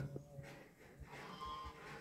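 A faint, drawn-out animal call in the second half, over quiet room tone.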